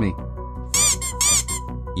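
Three short, high squawk-like cries about a second in, each rising then falling in pitch, over steady background music.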